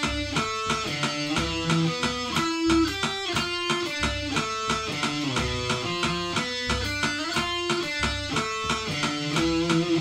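Electric guitar playing a picked single-note melodic line in steady time, with a metronome clicking evenly throughout; it ends on a held note near the end.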